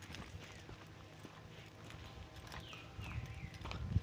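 Footsteps on a dirt path, a run of small crunching steps, with a low rumble that grows louder near the end.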